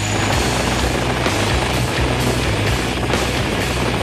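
Helicopter rotor and engine noise over a loud, driving rock music soundtrack.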